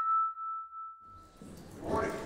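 A single bell-like chime note from a logo intro rings out and fades away over about a second and a half. The room noise of a large hall comes in near the end.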